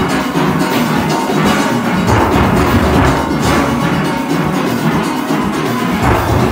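Full steel orchestra playing, heard from inside the nine-bass section, with the nine-bass pans being struck close by.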